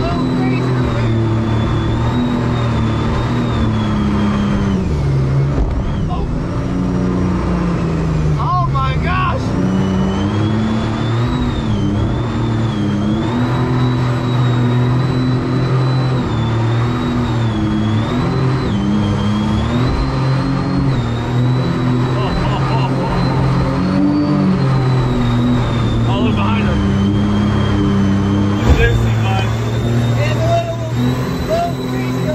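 Supercharged mini jet boat's engine running hard through river rapids, its pitch rising and falling as the throttle is worked, with a high whine that follows the engine speed and rushing water underneath.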